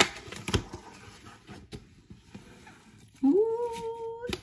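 Cardboard box being opened by hand: a couple of sharp clicks and light rustling of flaps and packing, then near the end a rising, then held whine.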